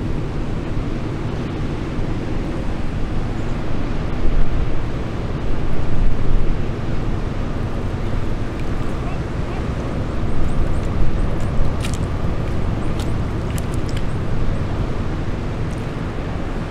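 Low, steady rumble of a small cargo ship's engine as the ship moves slowly close past, with wind noise that rises for a couple of seconds about four seconds in.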